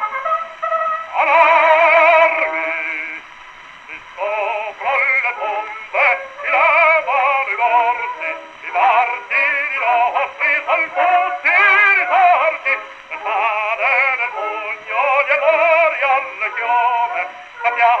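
Acoustic-era 78 rpm record of an operatic tenor singing with a wide vibrato, played on a Victor horn gramophone. The sound is thin and boxy, with no bass. There is a short pause between phrases about three seconds in.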